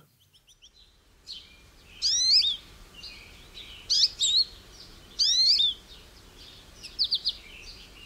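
A songbird singing short phrases of quick rising and falling whistles, one every second or two, over faint steady background noise; the first second is near silent.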